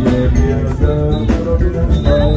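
Live Mandinka band music: plucked kora lines over bass guitar and drum kit with a steady beat.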